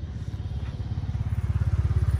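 A vehicle engine running close by with a low, even pulse, growing louder.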